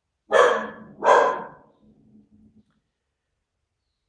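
A dog barking twice, loud and close, about two-thirds of a second apart, followed by a faint low drawn-out sound lasting about a second.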